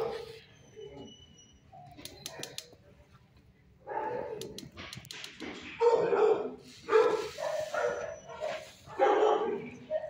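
Dogs barking in a shelter kennel, quiet at first with a few sharp clicks, then a run of loud barks from about four seconds in.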